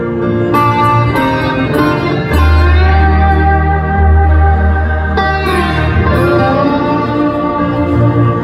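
Live instrumental passage of a piano ballad: piano chords with sustained guitar notes over them, and a deep bass note that comes in a little over two seconds in.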